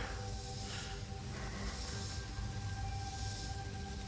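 Background music: a few sustained notes held steady, with a higher note joining about halfway through.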